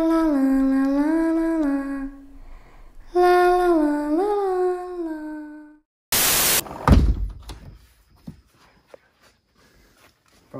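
A little girl's voice humming a slow wordless 'la la la' tune in two short phrases, the pitch stepping down and back up. About six seconds in, a half-second burst of static-like noise, then a single heavy thump.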